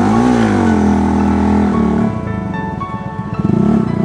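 Bajaj Pulsar NS160 single-cylinder motorcycle engine blipped up and back down, then running steadily before easing off about halfway through. Background music plays over it.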